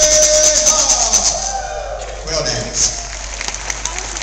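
Ending of a Cherokee dance song: a singer holds a long note over the shaking strokes of a handheld rattle, then a voice slides down in pitch and the rattling thins out and stops, leaving scattered voices.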